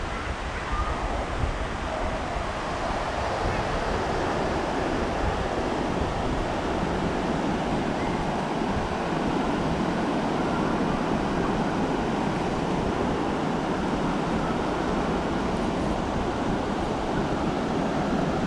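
Ocean surf washing steadily onto a sandy beach, with wind rumbling on the microphone.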